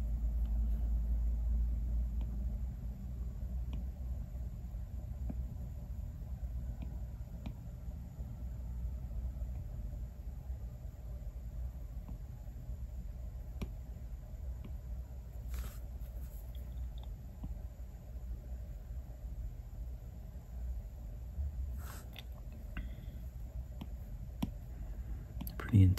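Low steady background rumble of room noise, with a few faint ticks of a stylus tapping a tablet screen scattered through it.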